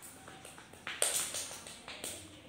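A few sharp taps or clicks, the loudest about a second in, each fading quickly.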